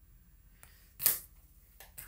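Near silence broken about a second in by one brief, hissy swish of tarot cards being handled, with a couple of faint clicks before and after it.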